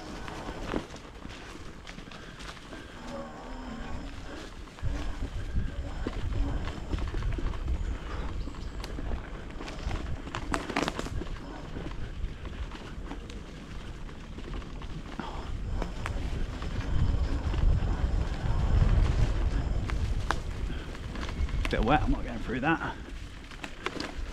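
Wind buffeting the microphone over the rumble of an electric bike riding fast on a rough woodland trail, with scattered knocks from bumps and debris thrown up by the tyres. The rumble swells in the second half as the ride speeds up.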